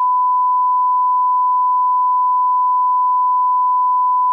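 Loud electronic beep: one steady, unbroken pure tone of the censor-bleep or test-tone kind, cutting in abruptly and held at a single pitch.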